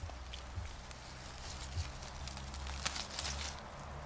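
Leaves and plant stems rustling and crackling as wild greens are picked by hand from low undergrowth. A few sharper crackles come about three seconds in, over a low steady rumble.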